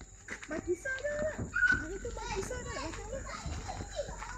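Children's voices chattering in short, broken bursts, softer than the nearby adult voice.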